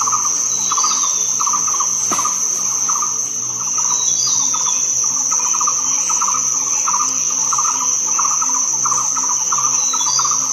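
Loud, steady insect chorus: a constant high-pitched shrill, with a lower insect call pulsing in quick chirps about twice a second.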